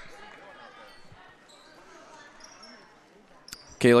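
Faint gymnasium ambience during a stoppage in a high school basketball game: low crowd murmur and court noise, fading lower, until a man's voice starts near the end.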